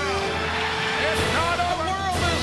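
Audio of a wrestling broadcast's opening montage: music under a mix of excerpted voices.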